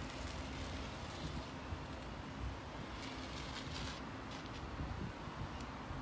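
Stick of chalk scraping across a concrete patio in two long strokes, the first over the first second and a half, the second about three seconds in, as a cross is drawn.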